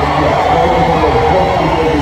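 Loud live hip-hop concert sound: music with a voice over it, without a break.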